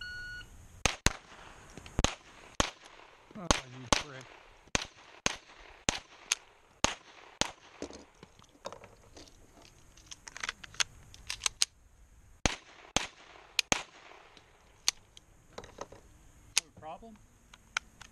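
A short electronic start beep, then two shooters' pistols firing fast, irregular shots at bowling pins, some thirty shots overlapping in an uneven rattle.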